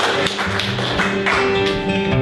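Acoustic guitar being strummed under a spatter of audience clapping, which thins out about a second and a half in, leaving the guitar and held notes clearer.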